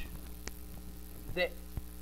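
Steady electrical mains hum in a pause in a man's speech, with a brief vocal sound about one and a half seconds in and a couple of faint clicks.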